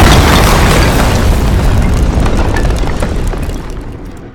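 Synthetic explosion sound effect from a phone special-effects app, the ground bursting open as coffins rise: a loud boom at the start that carries on as a long, deep rush of noise, fading slowly toward the end.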